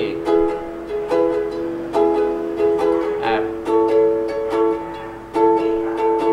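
Soprano ukulele strummed in a steady rhythm, switching between C and F chords, with a strong stroke a bit under every second and the chord ringing between strokes.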